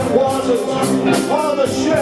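Live rock band in full play: a man's voice singing into a microphone over electric guitar and a drum kit, with the cymbals struck about four times a second.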